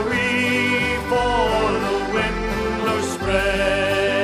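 Irish folk band music playing an instrumental passage of a sea ballad, with held notes and a melody line over them and no singing.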